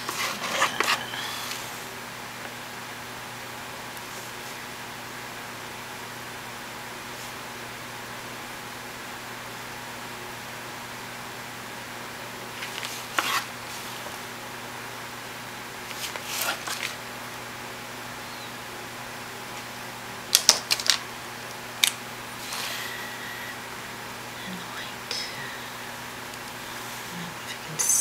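Steady background hum, like a fan, with occasional short clicks and rustles as a gel pen and paper are handled on the desk. There is a sharp cluster of clicks about two-thirds of the way through.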